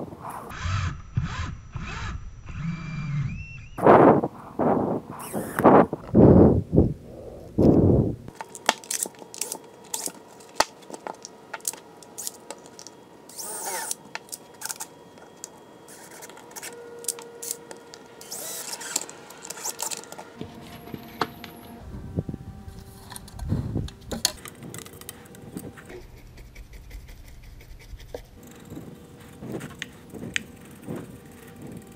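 DeWalt XRP cordless drill/driver running in short bursts as it drills and drives screws into a wooden frame, several in quick succession in the first eight seconds and a few more later. Between the bursts, quieter clicks and knocks of the wood and tools being handled.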